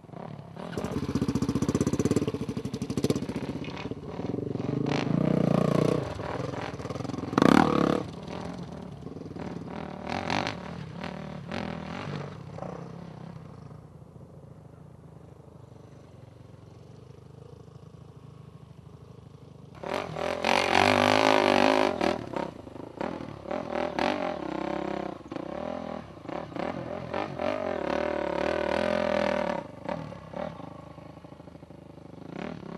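Off-road dirt bike engine revving hard in rising and falling bursts, with a sharp peak about seven seconds in. It drops to a low, quieter running sound for several seconds in the middle, then revs loudly again near the end.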